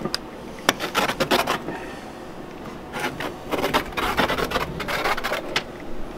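Pizza cutter wheel scoring half-set white chocolate cookies-and-cream bark on a paper-lined table: runs of short scraping, rasping strokes, once about a second in and again from about three to five and a half seconds. The bark is cut while between soft and hard, so the wheel still goes through it.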